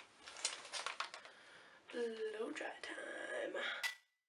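Clicks and rustling handling noise, then from about halfway a low, indistinct voice. The sound cuts off abruptly at the end.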